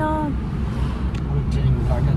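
Steady low rumble of a car on the move, heard from inside the cabin, with the tail end of a voice at the very start.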